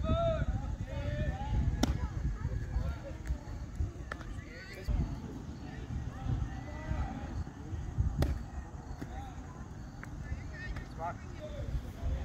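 Distant voices of players and spectators chattering over a low background rumble, with two sharp cracks, one about two seconds in and one about eight seconds in.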